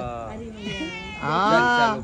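White Persian cat meowing: one long, drawn-out meow whose pitch rises and falls, in the second half.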